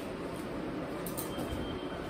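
Steady low background noise of a room, with a few faint soft ticks around a second in as a handbag is handled.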